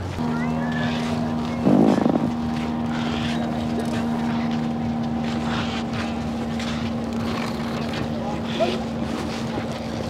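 A loud, rough fart-noise burst lasting about half a second, about two seconds in. It plays over a steady, pitched motor drone that starts at the beginning and continues throughout.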